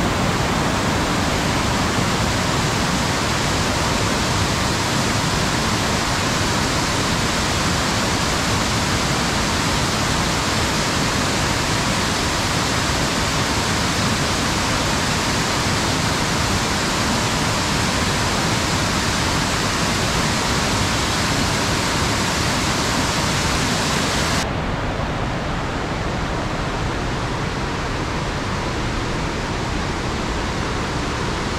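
Steady rush of a waterfall, a dense even roar of falling water. About 24 seconds in it turns a little quieter and duller as its high hiss drops away.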